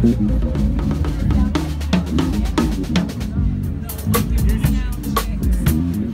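Drum kit being played in a groove: bass drum, snare and rim hits over low sustained bass guitar notes. The cymbal strikes grow busier about two-thirds of the way in.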